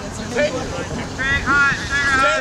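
Players' voices shouting across an open playing field, the words unclear, with the loudest call near the end.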